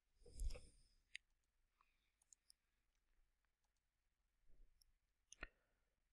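Near silence broken by a few faint computer mouse clicks, one just after a second in and one near the end, with a soft knock about half a second in.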